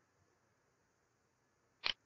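Near silence, then a single sharp computer mouse click near the end.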